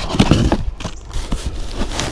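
Packing being handled in a cardboard box: plastic bubble wrap, foam and cardboard rustling, scraping and knocking irregularly as the contents are moved about.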